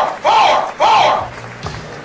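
A crowd shouting three loud calls about half a second apart, each rising and falling in pitch, over background music; softer thuds follow near the end.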